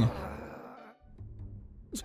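An anime character's growl trailing off in the first moments, followed by soft background music from the show.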